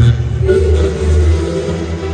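Live regional Mexican band music played loud over a concert PA, with a heavy sustained low bass line to the fore.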